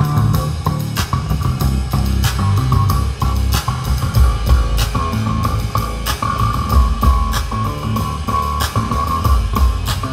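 Live rock band playing an instrumental passage: electric guitars and bass guitar over a drum kit keeping a steady beat.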